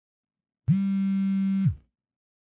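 A single low, buzzy electronic tone held steady for about a second, starting and cutting off abruptly, with silence around it.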